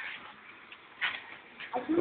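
A brief lull in talk: faint background noise with a short voice sound about a second in, then a voice starting up again just before the end.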